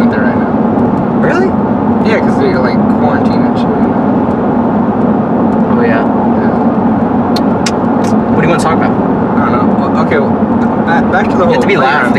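Steady low drone of road and engine noise inside the cabin of a moving car.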